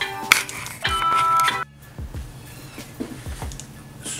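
Background music of bell-like chime notes over a low sustained tone, cutting off suddenly about a second and a half in. It is followed by a much quieter stretch of faint pencil strokes on paper.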